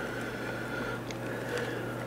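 Faint plastic clicks and fumbling of a servo-style lead being plugged into a radio receiver, over a steady low hum.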